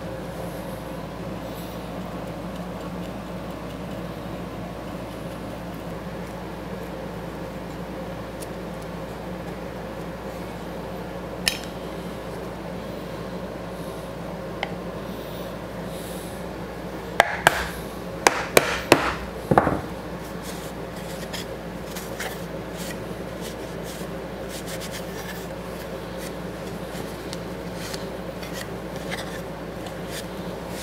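Steady workshop hum with light rubbing and handling noise from a small glued-up wooden box on a workbench. There is a single sharp click partway in, then a quick cluster of about half a dozen wooden knocks and taps over two or three seconds, just past the middle.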